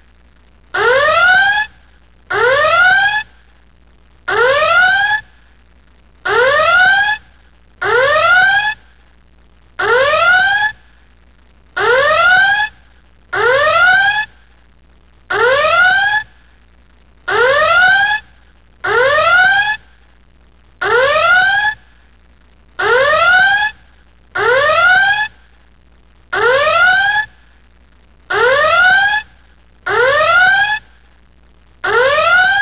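Electronic whooping alarm: a short tone that rises in pitch, repeated over and over with brief gaps.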